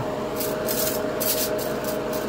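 Hobby spray booth's exhaust fan running with a steady hum, with three or four short bursts of hissing air over it.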